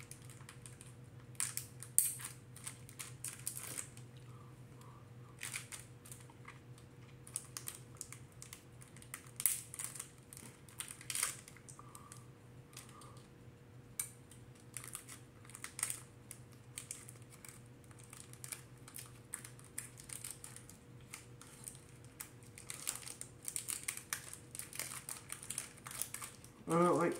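Crinkling and tearing of a Pokémon card pack's wrapper being worked open by hand with difficulty, in irregular clicks and rustles.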